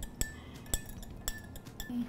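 A metal spoon clinking against a small glass as coffee is stirred, about six light clinks at an uneven pace, each with a brief ringing tail.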